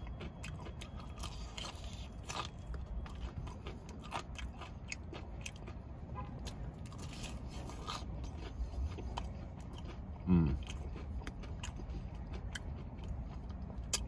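Close-up chewing of crispy Popeyes fried chicken: a run of small crunches and wet mouth clicks, with a brief voiced sound about ten seconds in.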